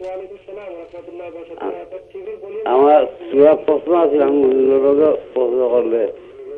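Speech only: a caller's voice coming in over a telephone line, sounding thin and narrow.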